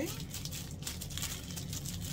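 Clear plastic wrapping crinkling in irregular small crackles as a wallet sealed in its plastic sleeve is handled, over a low steady hum.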